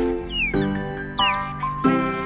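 Two quick falling bird chirps, about half a second and just over a second in, over background music with held chords.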